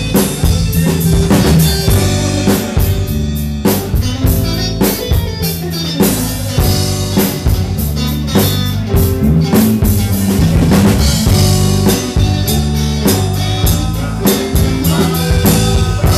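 Live band playing, with a drum kit keeping a steady beat of snare, rimshot and bass drum over a sustained bass line.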